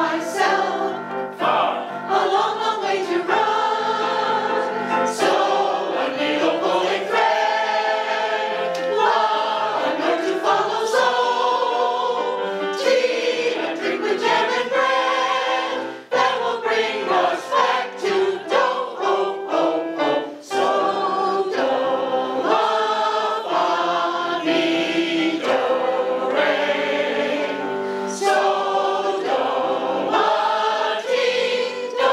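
A mixed choir of men and women singing a song in harmony, accompanied on a keyboard piano, with brief breaks between phrases about sixteen and twenty seconds in.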